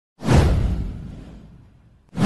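Whoosh sound effect from an intro animation: one sudden swish with a deep rumble under it, starting a moment in and fading away over about a second and a half.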